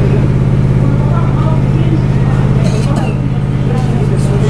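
A loud, steady low mechanical hum with a fast, even pulse, like a motor running, with faint voices behind it.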